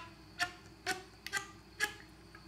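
Flute slap tongue: five short percussive pitched pops, about two a second, made by slapping the tongue against the teeth with the lips closed tightly, each pop sounding a little higher than the one before.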